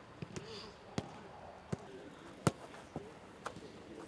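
Football (soccer ball) being kicked back and forth in a passing drill: a series of sharp kicks at irregular intervals, the loudest about two and a half seconds in. Faint voices of players calling in the background.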